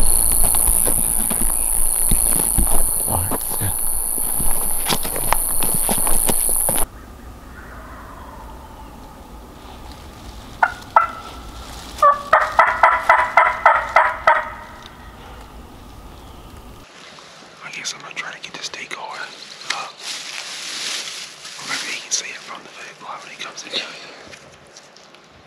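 Night insects trilling loudly with scattered footfalls, until a cut about seven seconds in. Then, in the quieter dawn woods, a wild turkey gobbler gobbles once in the middle: a rapid rattling string of a dozen or so notes lasting about two seconds.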